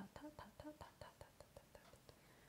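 A woman softly chanting "ta ta ta" in a quick even rhythm, about five syllables a second. Her voice fades within the first second to a whisper of faint clicking "t" sounds that die away near the end.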